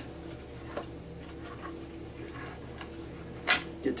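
Faint clicks and creaks of a rubber speargun band being pulled through a winged speargun muzzle, with one short, sharp rasp about three and a half seconds in.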